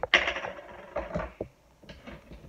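Plastic creamer bottle being handled: a sharp crackle just after the start, then a few light clicks and taps.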